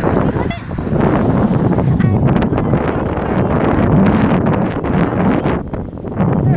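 Wind buffeting a handheld phone's microphone: a loud, continuous rush of noise that dips briefly near the end.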